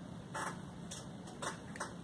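Faint rustling and brushing from a stretched canvas being handled and moved, four short soft strokes about half a second apart over low room tone.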